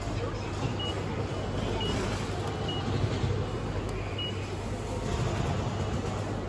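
Ticket machine touchscreen giving short, high single-pitch beeps as keys are pressed, four beeps about a second apart, over a steady background hum and noise.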